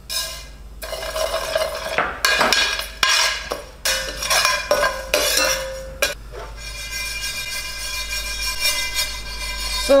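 Dry rice poured into a stainless steel frying pan, then toasted: a metal spoon stirs and scrapes the grains around the pan, with rattling and ringing metallic scraping.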